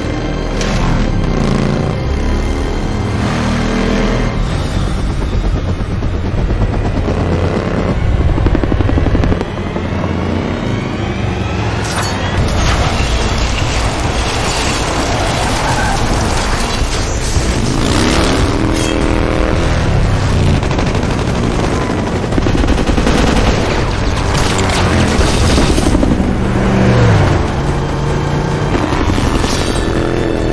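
Dense action-film soundtrack: a dramatic music score over a motorcycle engine revving up and down, a helicopter, bursts of machine-gun fire and heavy booms.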